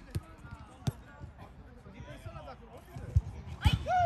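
A football being kicked on an artificial-grass pitch: a few short, sharp thuds, two in the first second and two more after about three seconds, under faint distant shouts of players, with one short shout near the end.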